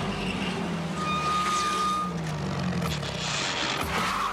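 Heavy armoured military vehicle running and moving, its engine pitch drifting up and down, with a brief high steady tone lasting about a second, about a second in.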